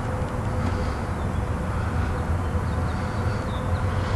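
Cadillac HT 4100 V8 idling under the open hood: a steady low hum with a faint constant whine above it.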